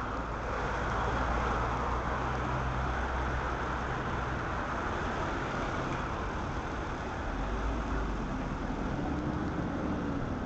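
Street traffic on a busy city road: cars and buses driving past, a steady mix of engine rumble and tyre noise. A bus engine grows louder toward the end as it pulls past.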